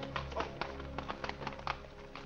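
Film score music fading down under the clip-clop of a horse's hooves on the street as a horse-drawn cab pulls up, sharp irregular taps several times a second.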